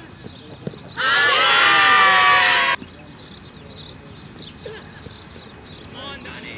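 A loud, drawn-out shout from cricket players on the field, starting about a second in and lasting nearly two seconds, with birds chirping faintly throughout.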